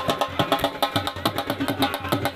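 Dhol drum beaten in a fast, even rhythm.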